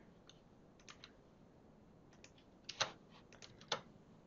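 Scattered keystrokes and clicks on a computer keyboard and mouse, a dozen or so short separate clicks with gaps between them, the loudest two near the end.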